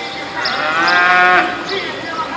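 A cow from the herd mooing once: one long moo of about a second that begins half a second in, rises in pitch at the start, holds steady and stops sharply.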